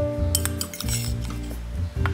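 Background music with a quick run of clinks of a spoon against a ceramic bowl about half a second in, and one more sharp clink near the end.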